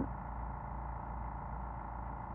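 Portable air compressor running with a steady hum while inflating a flat motorhome tire.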